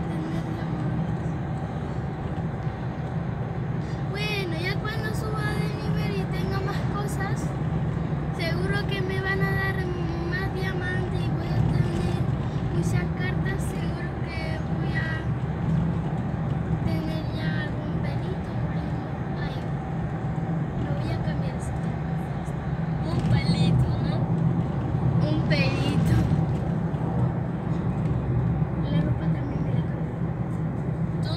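Steady road and engine noise inside a moving car's cabin, with voices over it at times.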